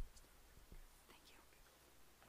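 Near silence, opened by a short low thump from the lectern's gooseneck microphone being handled, with faint whispering and a softer knock later.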